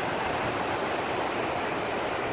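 Ocean surf washing onto a sandy beach: a steady, even rush of breaking waves.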